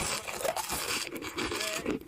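Close-miked mouth sounds of someone chewing and crunching a candy, ASMR-style: a dense run of irregular wet crackles and crunches.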